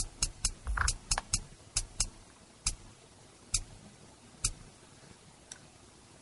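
Sparse drum-machine hits from Cubase LoopMash playback, sliced loop fragments: a quick cluster of short hits in the first two seconds, then single snare-like hits about once a second, on every second beat at 135 BPM.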